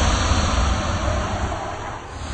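Closing logo-ident sound effect: a loud rushing noise with a deep rumble that starts suddenly and slowly fades, then surges again near the end.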